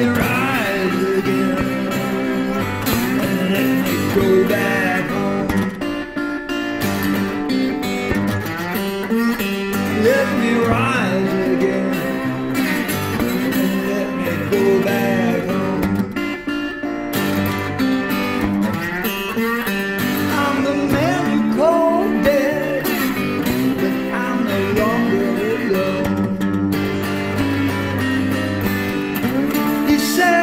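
Music: a hollow-body electric guitar played in a slow blues style, with a man's singing voice over it at times.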